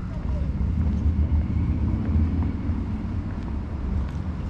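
Steady low outdoor rumble while walking a park path, with faint distant voices.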